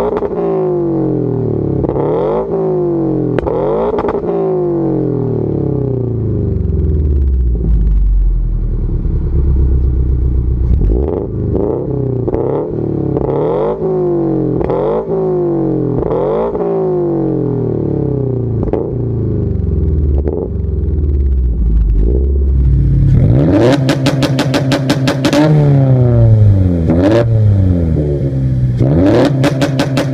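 Subaru BRZ flat-four engine through a full aftermarket exhaust, revved up and let fall again and again, one blip every second or two. About three quarters of the way through, a turbocharged BRZ on two-step launch control takes over: the revs held at one pitch while the exhaust fires a rapid string of pops and bangs, twice, with a rev between.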